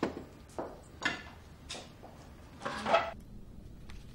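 A handful of short, scattered clinks and knocks of dishes and cutlery being handled at a dinner table, the loudest near the end.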